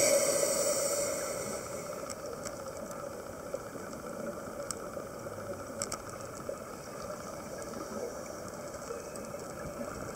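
A scuba diver's exhaled bubbles rushing past the underwater camera, loudest at the start and fading over about two seconds. After that, a steady low underwater hiss with a few faint clicks.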